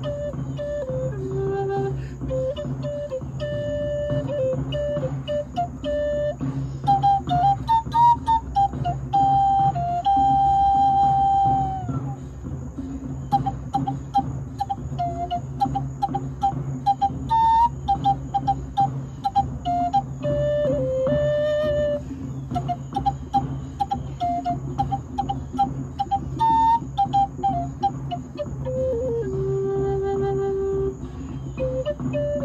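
G minor red cedar Native American flute playing a slow, free melody of separate notes, with one long held high note about ten seconds in and a drop to a low held note near the end.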